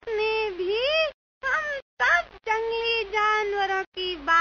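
A high-pitched voice vocalising in a sung way, with long held notes and pitch slides, broken by short pauses.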